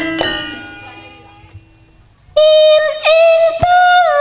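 Gamelan music: a last struck bronze tone rings on and slowly fades away, then about two seconds in a singer comes in loudly on long held high notes, with a brief dip in pitch near the middle.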